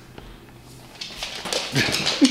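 A bulldog puppy's paws scrabbling and pattering on a hardwood floor as it dashes off, starting about a second in, with a man laughing near the end.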